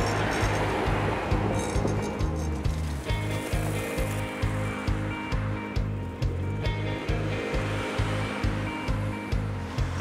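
Background music with a steady bass beat under held notes, opening on a rushing swell of noise.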